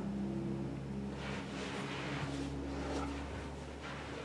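A strap being fed through its buckle and pulled tight on a padded board leg splint, soft rustling and scraping strokes, over a steady low hum that fades near the end.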